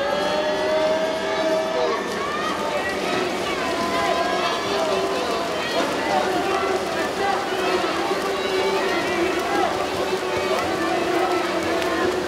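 Crowd of spectators and team-mates cheering and shouting for the swimmers during a relay race, many voices overlapping continuously without a break.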